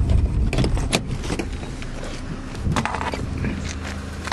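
Car engine and road noise heard from inside the cabin while driving, a steady low rumble with a few scattered knocks and clicks.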